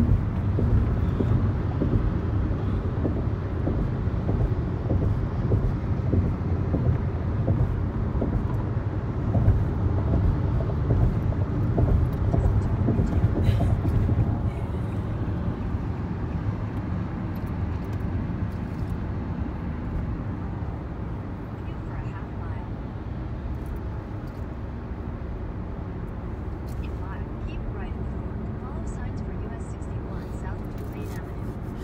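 Road noise heard from inside a moving car on a highway: a steady low rumble of tyres and engine, louder in the first half and easing off about halfway through, with a few faint clicks.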